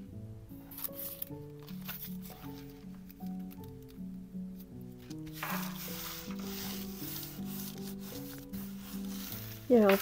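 Background music, and from about five and a half seconds in a soft, steady rustle of hands rubbing wet strength tissue paper down onto a gel printing plate to take up the print. A few light paper clicks come earlier, as a stencil is handled.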